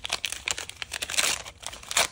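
Waxed-paper wrapper of a 1989 Topps trading-card pack crinkling and tearing as it is peeled open by hand: a dense run of crackles, thickest a little after one second.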